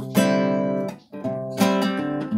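Acoustic guitar strumming chords: two strums about a second and a half apart, each left to ring, with a brief drop-off between them.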